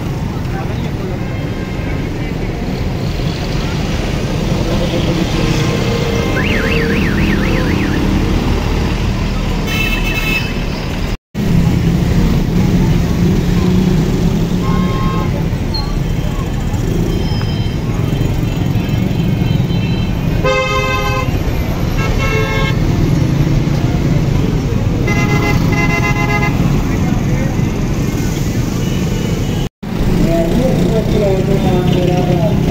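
Busy road traffic: engines and tyres making a steady rumble, with vehicle horns tooting several times from about a third of the way in.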